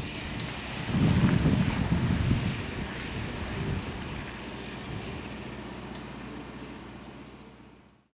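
Outdoor ambience with wind on the microphone: a low, gusty rumble that is loudest for a second or two about a second in, then fades out near the end.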